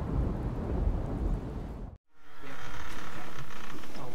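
Rumbling thunder with steady rain, fading over about two seconds and then cut off abruptly. After the cut, a quieter steady background hiss.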